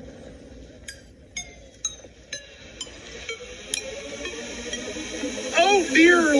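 Compact digital camera's buttons clicking as photos are stepped through: about seven small, evenly spaced clicks, roughly two a second, each with a short ringing tail. Men's voices groan in near the end.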